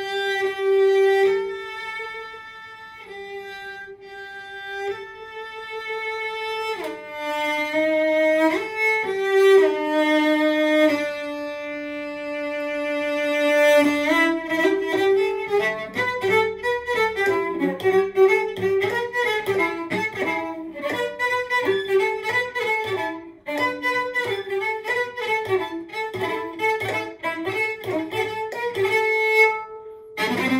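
Solo cello played with the bow: slow, long held notes for about the first half, then a quicker passage of short notes.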